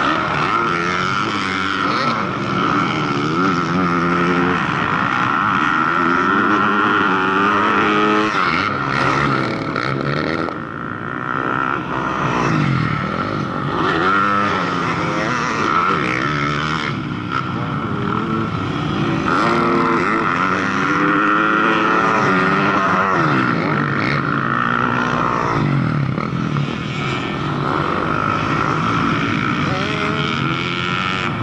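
Several motocross dirt bike engines revving up and down as they ride the track, their pitches overlapping and rising and falling, with a steady high whine underneath.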